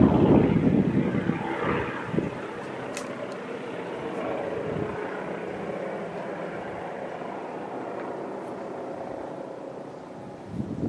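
Aircraft flying past overhead, loudest in the first second or two and then fading steadily as it moves away.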